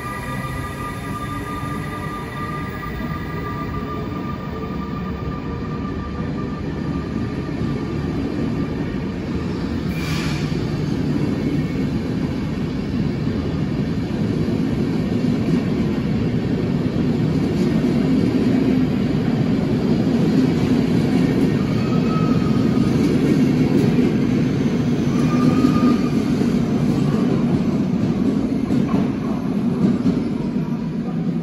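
SBB Re 460 electric locomotive and its intercity coaches rolling slowly past: a high electric whine from the locomotive fades in the first few seconds, then the rumble of the coaches' wheels on the rails grows steadily louder. There is a single sharp clank about ten seconds in and brief wheel squeals near the end.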